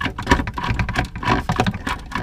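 Screwdriver backing a screw out of a plastic paper towel holder mounted under a wooden cabinet: a run of quick, irregular clicks.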